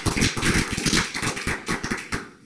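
Small audience applauding: many hands clapping at once in a dense, uneven patter of claps.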